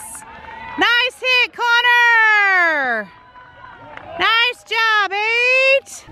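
A spectator cheering with long, high-pitched wordless whoops: one about a second in that falls in pitch over two seconds, then another near the end.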